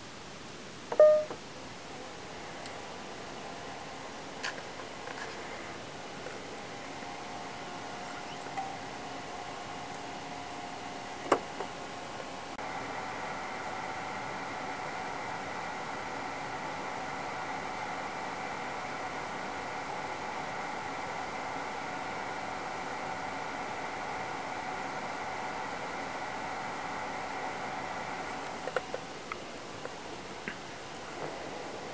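InFocus ScreenPlay 7205 DLP projector starting up: a brief beep about a second in as the power button is pressed, then its cooling fans run with a steady whine. A sharp click comes partway through, after which the fan sound steps up louder with several steady tones and keeps running. The projector stays on without the fan-failure shutdown, so the repaired lamp-fan connection is working.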